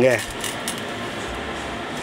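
A Chinese cleaver cutting into a raw prawn's hard shell on a wooden chopping board: a few faint crackles about half a second in, over a steady background hum.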